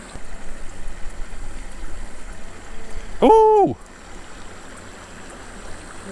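Small creek water running over a riffle, with gusty wind rumbling on the microphone through the first half. About three seconds in, one short hooting tone rises then falls in pitch.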